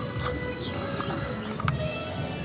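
Background music over irregular low knocks and scraping from hand-grinding raw turmeric and neem paste on a stone slab with a grinding stone, with one sharp click near the end.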